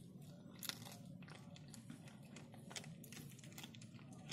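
A cat chewing on a mouse it has caught: faint, irregular clicks at uneven intervals over a low steady hum.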